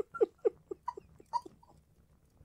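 A person laughing, a run of short 'ha' sounds that fade away and stop about one and a half seconds in.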